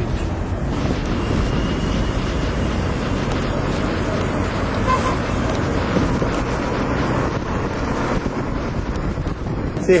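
Steady rush of wind and road noise in a moving car, heard from inside the car.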